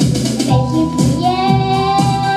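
A young girl singing into a microphone over a backing track with a steady beat, holding one long note from a little after a second in.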